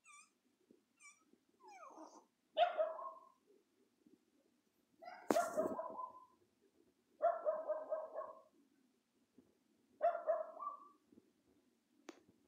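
A dog barking four times, about two and a half seconds apart.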